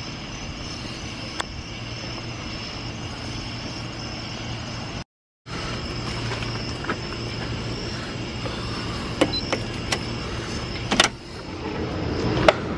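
Steady mechanical hum with a low drone and a thin high whine, cut off briefly about five seconds in and then resuming. A few sharp clicks and taps land near the start and again in the last few seconds.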